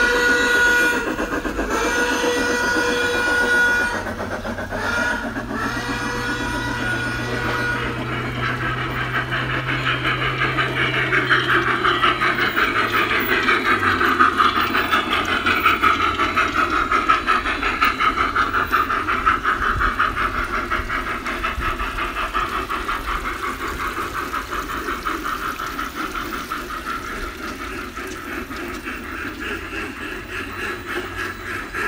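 Garden-scale narrow-gauge steam locomotive's sound system blowing a chime steam whistle three times, the last blast longest, then a steady rhythmic chuffing and running sound that swells and eases off as the train passes.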